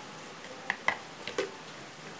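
White plastic lid being put onto a glass Philips blender jar: three short clicks and knocks in quick succession, over a steady hiss.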